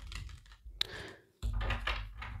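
Tarot cards being flipped over and set down on a tabletop: a few light clicks and taps, with a low rumble of handling noise from about halfway.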